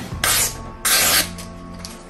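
Paper being sliced by a sharp 1070 carbon-steel knife: two short slicing sounds, the second about two-thirds of a second after the first, as the blade cuts cleanly through the sheet in a sharpness test. Background music plays underneath.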